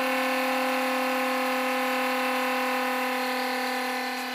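Homemade Rodin-coil pulse motor running on its charged capacitors with the battery disconnected: the pulsed coil and spinning magnet rotor give a steady pitched hum with several overtones.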